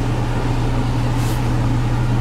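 A steady low mechanical hum with a faint hiss above it, unchanging throughout.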